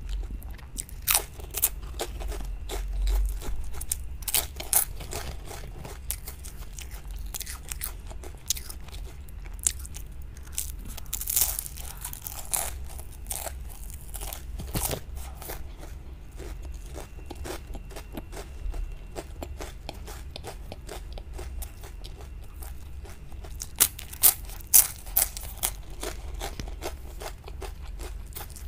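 Close-miked crunching bites and chewing of crispy deep-fried skewer food, sharp crackly crunches repeating throughout. The loudest bursts of crunching come near the start and again near the end.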